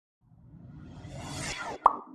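Animated logo intro sound effect: a whoosh that swells for about a second and a half, then a single sharp pop near the end as the logo appears, trailing off briefly.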